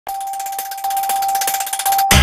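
Electronic news-channel logo sting: a steady high tone held throughout, with a fast, even flutter of bright ticks above it.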